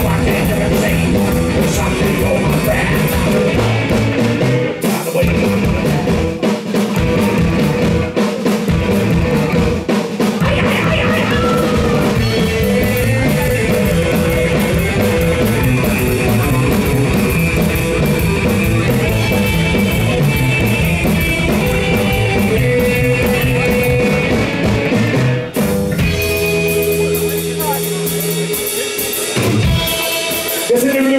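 Live psychobilly band playing loud: upright bass, drum kit and electric guitar under a sung vocal, with a fast driving beat. About 26 seconds in the beat stops and held notes ring on.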